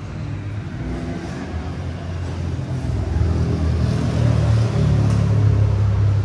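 A motor vehicle's engine rumble, low and steady, growing louder over several seconds and loudest near the end.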